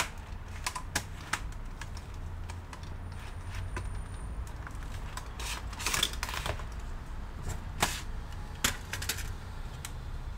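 Irregular sharp clicks and taps of hard plastic as hands work on a Lenovo V330 laptop's bottom case and internal parts. There is a cluster of louder clicks about six seconds in and single sharp clicks near eight and nine seconds, over a steady low hum.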